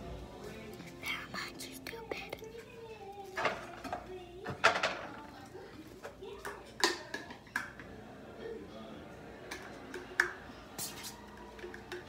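Faint voice and music in the background, broken by several sharp clicks and knocks, the loudest about five seconds in.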